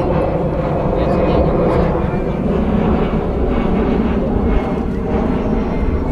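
Airplane flying overhead, a steady engine drone and rumble.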